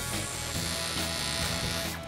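Welding arc buzzing steadily as a TIG torch welds a cylinder head, over background music.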